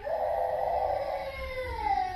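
A drawn-out wailing cry that starts suddenly and slides down in pitch during the second half.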